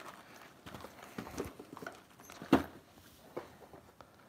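Cardboard trading-card hobby boxes being handled, turned over and set down on a tabletop: a few soft knocks, the loudest about two and a half seconds in.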